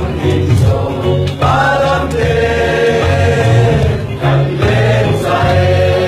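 A mixed group of young singers singing a Chin (Lai) worship song together, with several long held notes.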